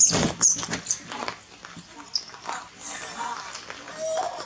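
Young macaques squealing and screeching in a scuffle, loudest in the first half-second, then fainter squeaks and short calls.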